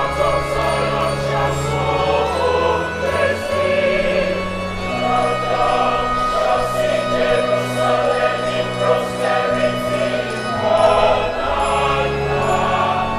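A large mixed choir singing a Christian choral piece in harmony, with long low notes held underneath that change about five seconds in and again near the end.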